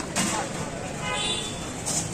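Roadside street noise: passing traffic and people's voices, with a brief high-pitched tone about a second in.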